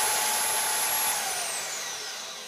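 Milwaukee portable bandsaw running unloaded, started from the table's paddle switch with its trigger strapped closed: a steady motor whine that about a second in begins falling in pitch and fading as the saw winds down.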